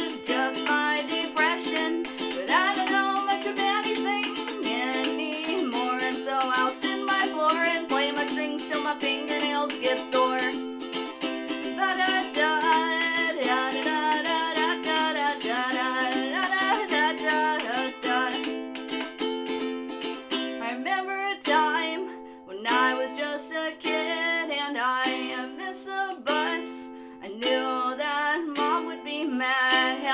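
Ukulele strummed in chords, with a woman's voice singing over it at times. About twenty seconds in, the strumming turns lighter and sparser.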